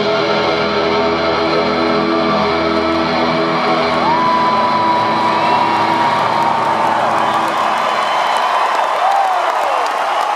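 The final held notes of a live rock song ring out and fade away while an arena crowd cheers and whoops more and more loudly. A long high steady note cuts through near the middle.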